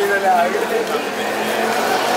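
Background voices talking, with a steady motor-like drone underneath.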